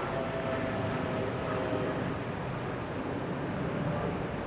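Steady outdoor city ambience: a low rumble of distant engines, with a faint steady whine during the first two seconds.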